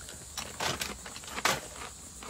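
A Popcorners popped-corn chip being bitten and chewed: a few separate sharp crunches, the loudest about one and a half seconds in.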